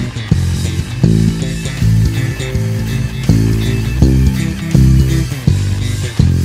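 Electric bass played fingerstyle, a run of loud low notes, over a rock band recording with guitar in an instrumental passage without vocals.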